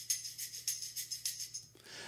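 Recorded percussion tracks from a mix played back on their own: a quick, even pattern of high, bright shaken strokes that stops shortly before the end.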